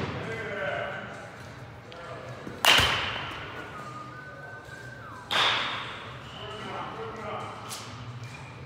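Baseball bat striking a pitched ball twice, about two and a half seconds apart; each hit is a sharp crack with a brief high ringing tone that dies away.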